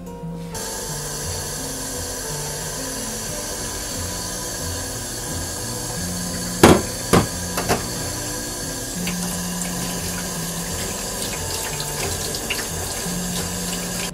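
Kitchen tap running into a stainless-steel sink, splashing over tapioca pearls in a mesh strainer. A few sharp metallic knocks come a little after halfway, the loudest sounds in the stretch.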